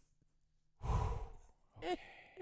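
A person sighs loudly, one long breathy exhale of about a second starting near a second in. A brief voiced sound follows near the end.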